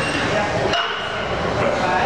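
A 225 lb barbell being deadlifted, its plates giving one sharp metallic clink with a brief ring about three-quarters of a second in, over the steady din of a busy gym with voices.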